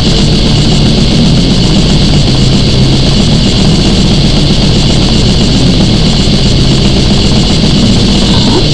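Death metal recording playing loud and unbroken: heavily distorted guitars over drums, with no break or single standout event.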